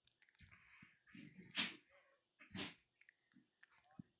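A dog huffing in rough play: two loud, breathy huffs about a second apart, with softer scuffling noises before them.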